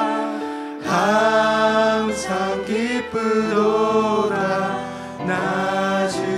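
Live worship music: a male lead vocalist sings into a handheld microphone over sustained band accompaniment, his phrases breaking briefly about a second in and again near the five-second mark.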